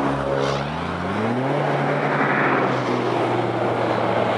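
A motor vehicle passing close beside a bicycle: its engine note rises in pitch about a second in, and tyre and rushing air noise swells about two seconds in, over steady wind noise on the bike-mounted microphone.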